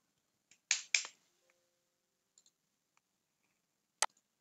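Two sharp clicks about a quarter second apart, a little under a second in, then a few faint ticks: a computer keyboard and mouse being worked.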